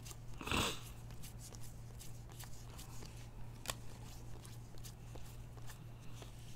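Trading cards being slid off a stack and dealt onto another by hand, one after another: faint scattered clicks and rustles of card stock, with one brief louder sound about half a second in.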